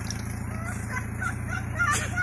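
An engine idling steadily under short, high chirping calls, which come thicker and louder near the end.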